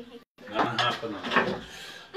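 Indistinct talking with a little clatter, after the sound cuts out completely for a moment near the start.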